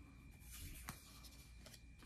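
Faint handling of a stack of baseball trading cards picked up off a wooden table: a soft rustle with a light click just before a second in.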